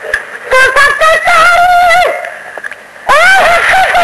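A solo voice singing a Sindhi naat, drawing out long notes with a wavering, ornamented pitch. The phrase breaks off about two seconds in and the singing resumes about a second later.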